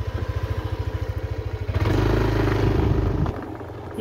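Small motorcycle engine running with a steady low pulsing, then revved louder for about a second and a half from just under two seconds in before easing back.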